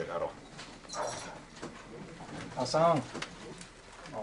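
Short, quiet bits of spoken film dialogue with pauses between them, and no other distinct sound.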